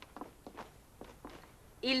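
A few soft footsteps on a hard tiled floor, faint, as people step into the room.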